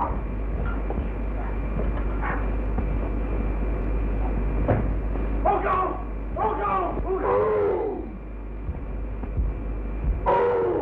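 Steady hiss and low hum of an early sound-film soundtrack, with three wordless vocal cries or groans from about halfway through.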